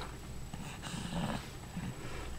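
A baby's soft grunts and breathy little vocal sounds, faint and brief, about a second in and again near the end.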